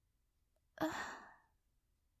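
A woman's exasperated sigh, a short voiced 'ugh' about a second in that trails off into breath.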